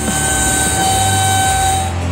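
A steady whine made of two thin tones over a high hiss and a low hum. It sets in as the talk stops and cuts off just before the end.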